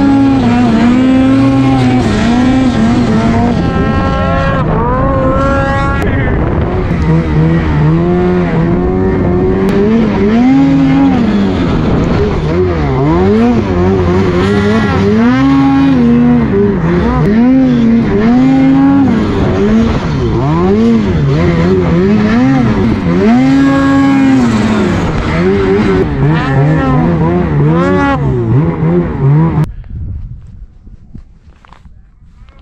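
Ski-Doo snowmobile's two-stroke engine revving up and down continuously under throttle while riding through deep powder, its pitch swooping up and back down about once a second. The sound cuts off abruptly just before the end.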